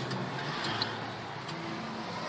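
Steady low hum of a car engine and road noise heard inside the cabin while driving.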